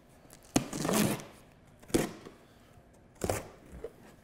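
Cardboard box being opened by hand: packing tape ripping and cardboard flaps pulled apart, in three short sharp sounds with quiet between.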